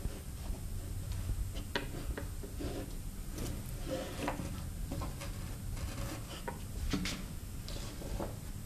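Quiet handling noises of a kiteboarding control bar and its lines being moved on a tabletop: scattered small clicks and light rustling.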